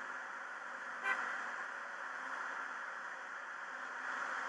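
A single short, pitched toot like a horn about a second in, over a steady hiss.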